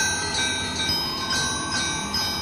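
High, ringing chime tones in a piece of music, with a new note struck about every half second and each left to ring over the others.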